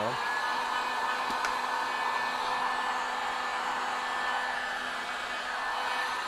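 Handheld electric heat gun blowing steadily: an even rush of air with a faint steady motor hum. It is warming a tail light housing so the clamped diffusion panels can be pressed down against the lens.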